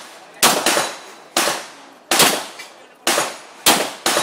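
A string of gunshots, about five, spaced roughly a second apart, each cracking sharply and dying away in a short echo.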